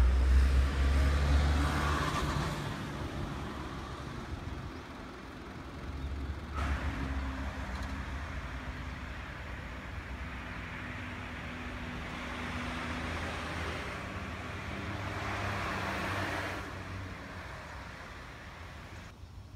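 Road traffic: cars going by, the loudest right at the start and fading over the first few seconds, with another passing about six seconds in and a third near the end.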